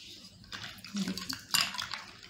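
A steel ladle stirring ice cubes and watermelon pieces in a metal pot of sharbat. The ice and ladle clink against the pot's side, loudest about one and a half seconds in.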